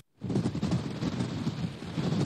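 Blizzard wind buffeting an outdoor microphone: a dense, rumbling rush of noise that starts suddenly after a split-second gap of silence.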